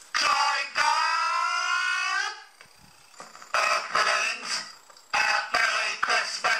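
Electronically processed Dalek-style voice singing phrases of a Christmas duet. The first phrase ends in a long held note that rises slightly, with short quiet gaps before further sung phrases.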